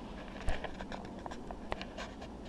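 Scattered light clicks and taps, with two sharper knocks about half a second in and near the end, over a low steady hum: handling noise from a hand-held camera being moved.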